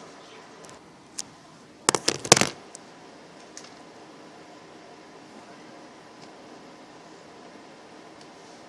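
Handling noise: a single sharp click about a second in, then a quick cluster of sharp clicks and knocks around two seconds in, over a steady faint hum.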